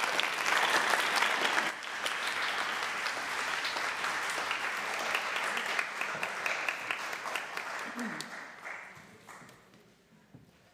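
Congregation applauding, a dense patter of many hands clapping that gradually dies away over the last couple of seconds.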